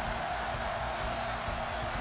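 Background music under the steady noise of a stadium crowd cheering.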